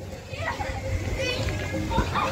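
Children playing and calling out briefly inside an inflatable zorbing ball, over a steady low background din.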